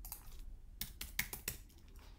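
Typing on a computer keyboard: a quick run of separate keystrokes, entering the word "welcome".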